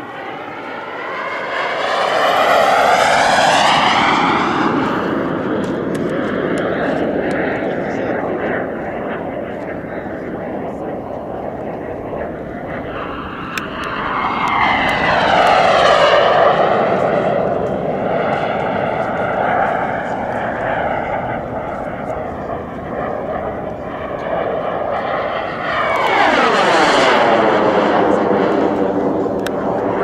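Radio-control model jet's turbine engine making three fast passes: a high whine that swells near the start, midway and near the end, each time dropping in pitch as the jet goes by.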